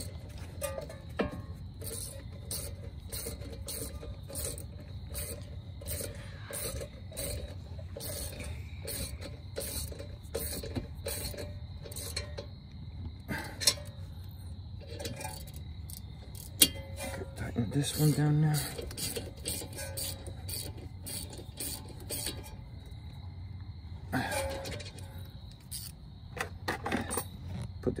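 Hand ratchet clicking in short runs as brake caliper bolts are wound in and snugged, with an occasional clink of metal tools.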